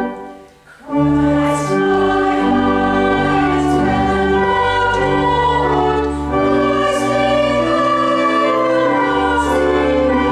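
Church choir singing a carol with organ accompaniment in long held chords, with a short break between phrases just after the start.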